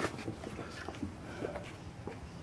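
Faint handling noise: a few light, scattered clicks and rustles as peel ply is pressed and pulled by hand over wet filler.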